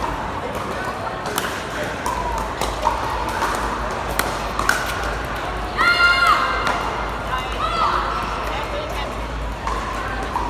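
Pickleball rally: a few sharp pops of paddles hitting the plastic ball, with a couple of short shoe squeaks on the court surface about six and eight seconds in, over steady crowd chatter in a large hall.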